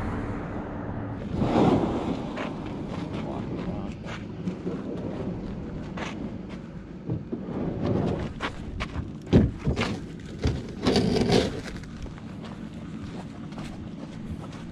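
Irregular knocks and thumps of handling on the hollow plastic hull of a small fishing boat, the loudest about nine seconds in, with a short scraping rush around eleven seconds in.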